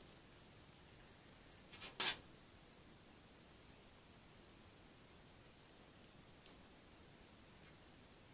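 A short, crisp snip about two seconds in and a fainter click later, over quiet room tone: a blade cutting into the leathery shell of a ball python egg.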